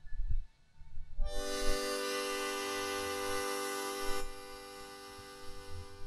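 A free-reed instrument, harmonica-like, blown in one long held chord of several steady pitches. It starts about a second in, holds level for about three seconds, then sounds a little softer and trails off near the end. A few soft bumps come before it.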